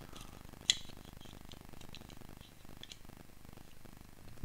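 Faint clicks and ticks of a plastic vernier caliper being handled and its jaws slid against a plastic Lego brick, with one sharper click under a second in.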